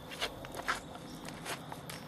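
A few footsteps, about four uneven steps, over a faint steady hum.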